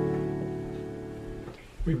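A chord on a Yamaha YDP-223 digital piano rings on after the hands leave the keys and dies away over about a second and a half. A man starts speaking near the end. The piano is sounding normally now that its rubber key contacts have been cleaned.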